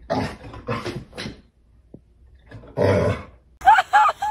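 A dog growling in short bouts at its own reflection in a mirror, the last and loudest bout about three seconds in.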